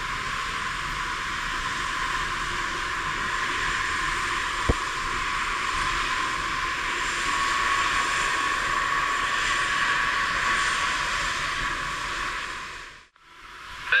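Airbus A380-861's Engine Alliance GP7200 turbofans at taxi power: a steady jet rush with a faint high whine that grows stronger past the middle. A single click comes about a third of the way in, and the sound drops out briefly about a second before the end.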